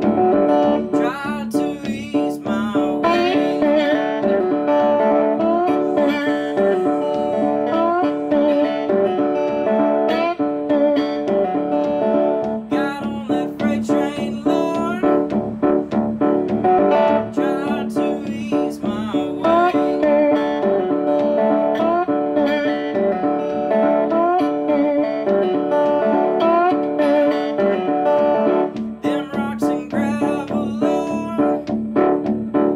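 Electric license plate guitar in open D tuning, played through a small tweed amplifier: a continuous hill-country blues instrumental with sliding, wavering notes, typical of bottleneck slide playing.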